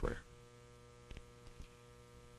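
Low, steady electrical mains hum with a buzz of many even overtones, from the sound system, and two faint short knocks about a second and a second and a half in.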